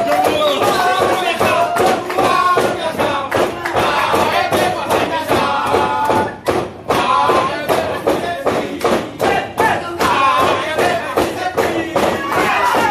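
A group chanting a rhythmic team cheer in unison, with claps and thumps keeping a steady beat; it breaks off briefly about six and a half seconds in.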